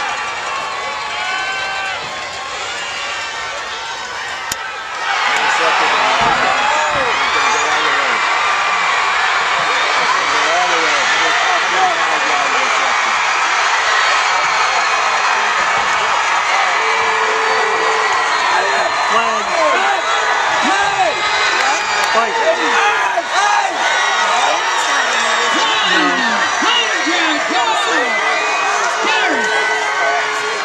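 Football crowd cheering and shouting, many voices overlapping; it jumps suddenly louder about five seconds in and stays loud.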